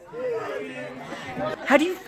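Voices talking and chattering, with a louder exclamation near the end.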